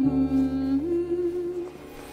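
A voice humming a slow melody over a soft, sustained music backing, the hummed note stepping up a little under a second in, then the humming and backing fading out near the end.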